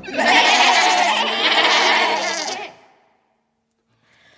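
A group of children's voices calling out together in a noisy jumble for about two and a half seconds, then cut off suddenly into silence.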